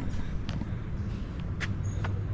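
Outdoor background noise: a steady low rumble, with a couple of soft knocks about a second apart.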